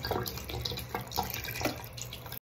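Water running steadily from a bathroom sink tap and splashing into the basin as a silicone menstrual disc is rinsed under it.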